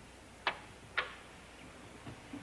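Two short, sharp clicks about half a second apart, over a faint steady background hum.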